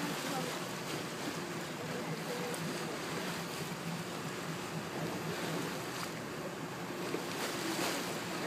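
Steady wash of sea water and wind on the microphone aboard a boat at sea, with faint voices in the background.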